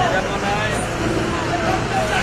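City buses running past at close range in busy street traffic, a steady noise with people's voices talking over it.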